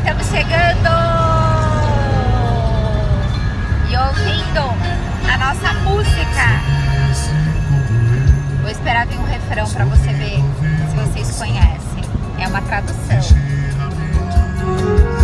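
A woman singing along to music in an open-top convertible, her voice sliding in long held notes, over a steady rumble of wind and road noise from the moving car.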